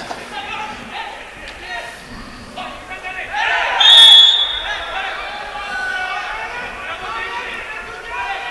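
Players and spectators shouting at a football match, rising to a loud outcry about three and a half seconds in. A short steady referee's whistle blast sounds within it, stopping play for a foul.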